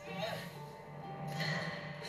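Movie trailer soundtrack playing: music with two swells of noise, about a quarter second and a second and a half in.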